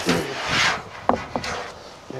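The cover over the battery bank in a pickup bed being opened: a scraping, rubbing noise, followed about a second in by two short, sharp sounds.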